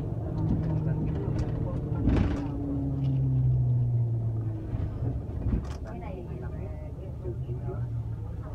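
Bus engine and road noise heard inside a moving bus cabin: a steady low hum that grows stronger for a couple of seconds mid-way. There is a loud short whoosh about two seconds in and a sharp click a little after five seconds.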